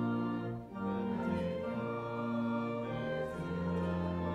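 Church organ playing a hymn tune in sustained chords that change about once a second, with a short break about two thirds of a second in.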